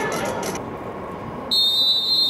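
A referee's whistle blown once, about one and a half seconds in: a single shrill blast of under a second that stops sharply.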